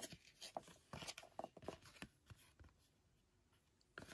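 Faint handling of baseball trading cards: light clicks and rubs as the cards are slid against one another, thinning out about two and a half seconds in.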